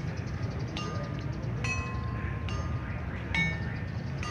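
Bell-like metal percussion notes struck about once a second, each ringing on briefly, the pitch changing from note to note, over a steady low rumble.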